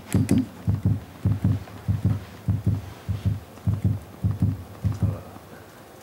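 Fingers tapping on a live microphone, a steady run of dull low thumps in quick pairs, about one pair every half second: a microphone check before the talk.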